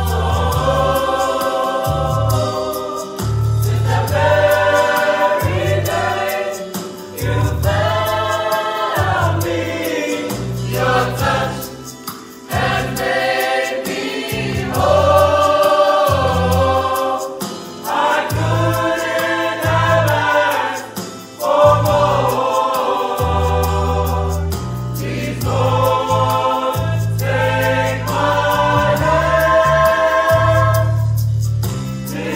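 A youth choir singing a gospel song in harmony, in phrases of a few seconds with short breaks between them, over a low bass line that changes note.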